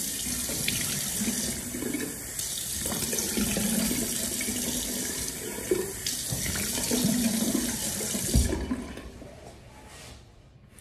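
Tap water running into a bathroom sink while someone splashes water onto their face with cupped hands. There is a knock just before the water shuts off, a little over a second before the end.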